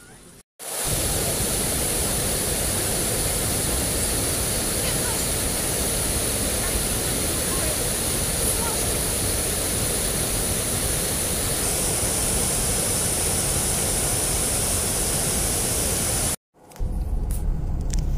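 Water rushing steadily over a canal weir, a dense unbroken roar that starts suddenly about half a second in and breaks off abruptly near the end.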